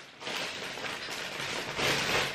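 Table knife scraping through spreadable butter and against the sides of a plastic butter tub: a soft, steady scraping that grows a little louder near the end.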